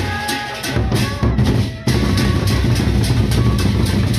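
Sasak gendang beleq ensemble playing: the big double-headed barrel drums beat a dense, heavy rhythm, coming in about a second in and surging back after a brief break just before two seconds. Evenly spaced crisp metallic strokes sound over the drums, with pitched gong tones fading early on.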